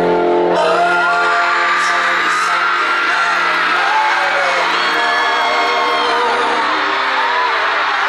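Arena crowd screaming over a held chord from the band's sound system that starts suddenly and changes about five seconds in: the opening music of the concert.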